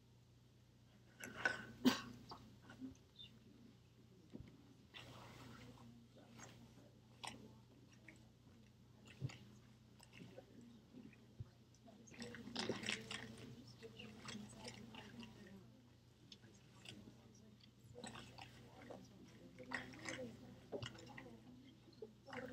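Quiet lecture-room sound while students answer a poll: scattered clicks and rustling, faint murmuring voices that swell a few times, and a steady low hum.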